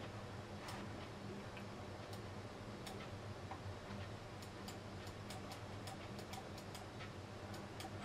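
Faint, irregular clicks of a computer mouse and keys, a few at first and then several quick ones in the second half, over a low steady hum.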